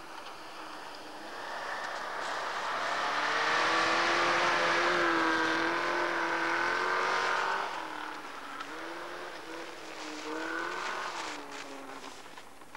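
Rally car engine running at high revs as the car slides past through snow, the note loudest in the middle, then fading and rising and falling in pitch near the end as the driver works the throttle.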